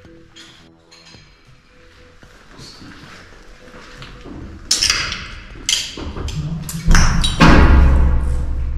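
Background music that swells from quiet to loud, with two sharp hits around the middle and a deep low boom in the last second.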